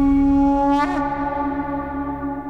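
A conch shell (shankha) blown in one long held note, with a brief wobble in pitch about a second in.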